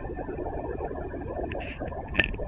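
Steady low outdoor background rumble with no clear source, and a short hiss about one and a half seconds in.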